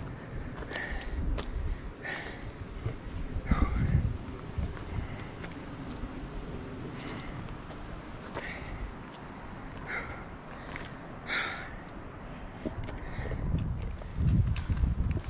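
Footsteps on a rocky gravel trail with short breaths from a hiker, over uneven wind rumble on the microphone that surges about four seconds in.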